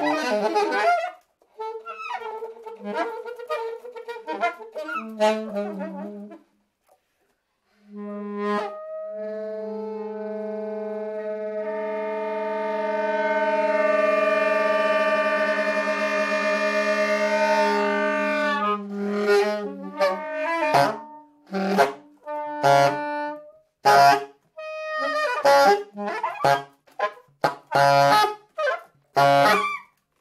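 Soprano and alto saxophone duo playing: quick broken phrases, a brief silence, then long held notes together that swell and fade, then short stabbed notes separated by gaps.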